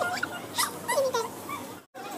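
A young child's high-pitched whining voice: several short cries that rise and fall in pitch. The sound cuts off abruptly just before the end.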